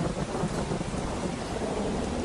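Rain and thunder sound effect, an even hiss of rain with a low rumble, mixed into the song's backing track.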